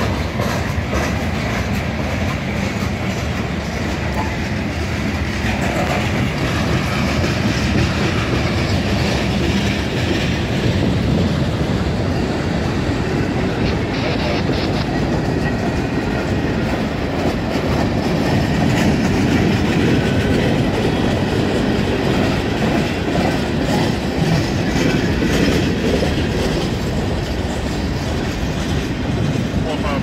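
Freight train of boxcars and gondolas rolling past at close range: a steady rumble of steel wheels on the rails, a little louder from about halfway through.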